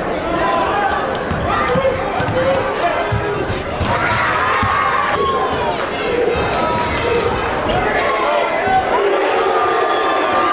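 Basketball dribbled on a hardwood gym floor in repeated thuds, over the talk and shouts of a crowd of spectators.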